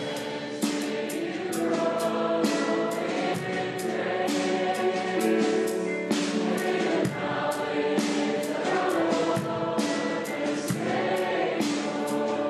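A choir singing a worship song with instrumental accompaniment and a steady beat.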